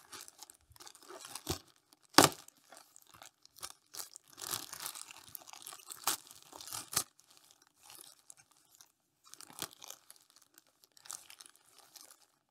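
Thin plastic bag crinkling and rustling as it is worked open by hand, in irregular bursts of crackle with one sharp snap about two seconds in and the busiest rustling a little before the middle.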